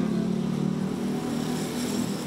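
Street traffic: vehicle engines running steadily.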